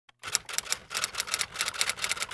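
Typewriter sound effect: a quick, even run of key strikes, about six a second, starting about a quarter second in.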